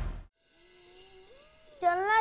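Music ends abruptly at the start, leaving crickets chirping in short, evenly repeated high chirps, about three a second. A child's voice comes in loudly near the end.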